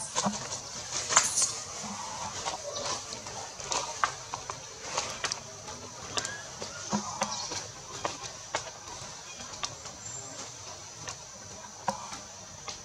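Forest ambience: a steady high-pitched drone like insects, with short squeaks, clicks and brief calls scattered through it, the loudest a short rising call about a second in.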